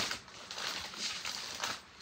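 Clear plastic bag of flat wooden kit pieces crinkling and rustling as it is handled and set down on a desk, with a few light knocks. It fades out near the end.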